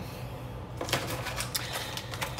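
A rapid run of light clicks and rattles, starting about a second in, from something being handled at a kitchen counter.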